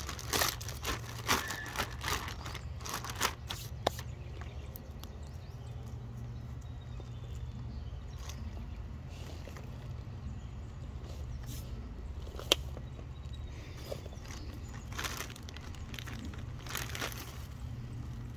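Thin plastic bag crinkling and rustling in short bursts as it is opened and a clump of dahlia tubers is pulled out. The bursts are busiest in the first few seconds and again near the end, with a few sharp clicks, over a steady low hum.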